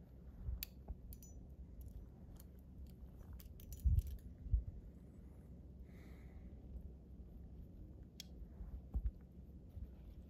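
Metal climbing hardware clinking in scattered light clicks, with a small cluster a little before four seconds in. A few dull low thumps are louder than the clinks, near four seconds and again near nine.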